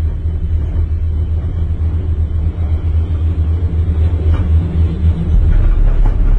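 Low, steady rumble inside a moving gondola cabin as it travels along the cable, with a few faint clicks.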